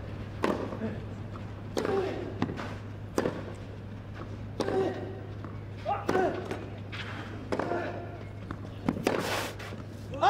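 Tennis ball struck back and forth in a rally on a clay court: about seven sharp racquet hits, one every second and a half or so, most followed by a player's short grunt, over a steady low hum.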